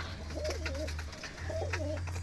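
Racing pigeons cooing, two wavering coos, one about half a second in and another near the end, over a steady low hum.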